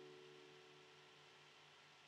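Near silence: the last faint ring of a final strummed chord on a nylon-string classical guitar, dying away over the first second, leaving faint hiss and a low steady hum.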